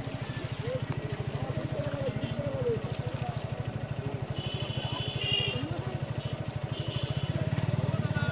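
A small engine running steadily with a low, even putter, with faint voices over it.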